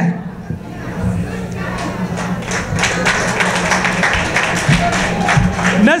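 Audience clapping and cheering, building about a second in and fading near the end, with a steady low hum under it.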